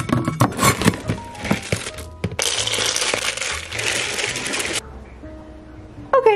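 Dry dog kibble scooped out of a plastic storage bin, clicking and rattling, then poured into a slow-feeder dog bowl in a dense, steady rattle of about two seconds that stops suddenly. Background music plays underneath.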